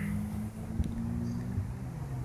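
Road traffic: a vehicle engine's steady low hum, with a single sharp click a little under a second in.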